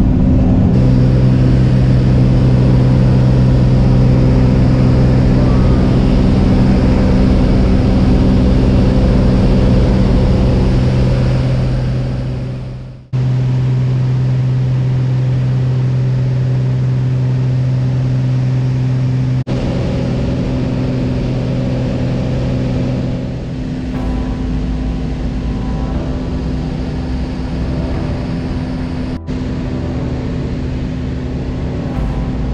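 Single-engine light aircraft's piston engine and propeller droning steadily, heard from inside the cabin. The drone fades and cuts off abruptly about halfway through, then resumes at a slightly different pitch, with a few more brief breaks later.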